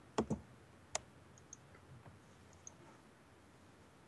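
A few faint, sharp computer mouse clicks: two close together at the start, a crisper one about a second in, then a few fainter ticks.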